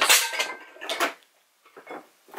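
Empty glass candle jars clinking and knocking as they are handled and set down: a few sharp clinks in the first second, then a faint one near the end.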